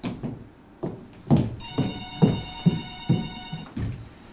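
Telephone ringing, one ring lasting about two seconds from about a second and a half in, over a run of low thumps like footsteps on a stage floor.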